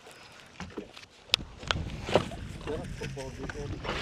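A few sharp clicks and knocks from fishing tackle being handled on a boat, spread over a couple of seconds, with a faint voice talking near the end.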